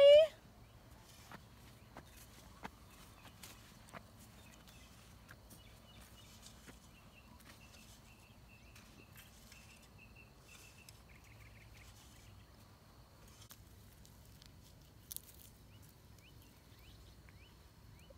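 Faint outdoor ambience with a few soft scattered ticks and scuffs. In the middle a distant high chirping goes on for several seconds as a quick run of short, even notes, and there is a brief sharp sound near the end.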